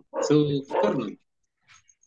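A person speaking over a video call: two short utterances, then a pause with one faint short sound.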